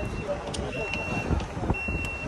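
Electronic warning beeper sounding one high steady tone, each beep about half a second long, repeating about once a second, over street and traffic noise.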